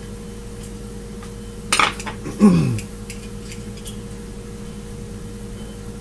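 Small screwdriver and tiny screws clicking and clinking against a plastic headlamp battery housing as its screws are taken out. There is a quick cluster of sharp clicks about two seconds in, then a short low sound that falls in pitch.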